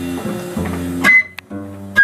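Live small-group jazz: plucked double bass notes under piano, with two sharp band accents, one about halfway through and one at the end, and the band briefly dropping out between them.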